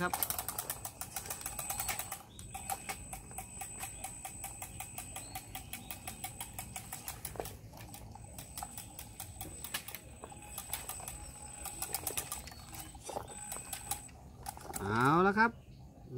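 Radio-controlled model kra-tae farm tractor driving, a rapid, even mechanical ticking over a steady high whine from its motor and drive.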